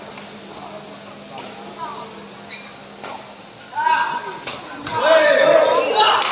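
A sepak takraw ball kicked back and forth in a rally: several sharp kicks about a second apart. Loud shouting voices come in about four seconds in and run to the end.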